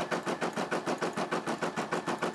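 Brother SE600 embroidery machine stitching, its needle punching through the hooped fabric in a fast, even rhythm of short mechanical strokes.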